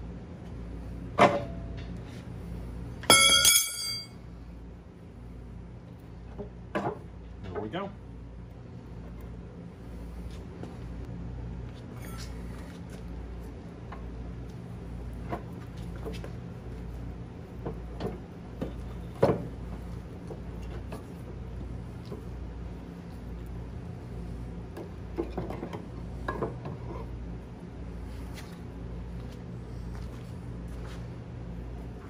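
Scattered metal clinks and knocks as the crankshaft of a 1923 McCormick-Deering 6 HP engine is worked out of its cast-iron block, with one ringing metallic clang about three seconds in. A steady low hum runs underneath.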